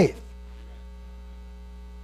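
Steady electrical mains hum in the audio system, heard plainly in a pause after a man's voice cuts off at the very start.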